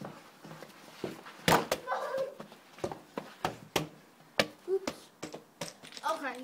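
Irregular sharp knocks and thuds of a football being kicked and bouncing, about a dozen, the loudest about one and a half seconds in, with a short vocal sound just after it.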